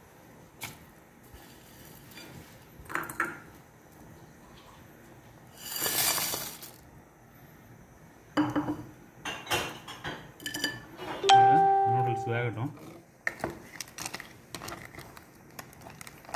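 Kitchen handling sounds as dry instant noodles go into a metal pot of soup: scattered light clinks of utensils against the pot, and a loud rustle lasting about a second some six seconds in.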